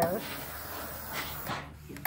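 Steam iron hissing steadily as it presses fabric, with a couple of brief stronger puffs partway through.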